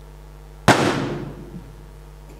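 A single sharp hammer blow on a hard surface about two-thirds of a second in, echoing briefly in the room.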